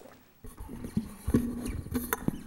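Irregular low knocks and thumps over a rustling noise, close to the microphone, starting about half a second in: handling noise at a speaker's microphone.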